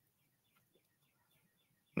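A faint run of short, high chirps, each falling in pitch, about five a second: a small bird chirping.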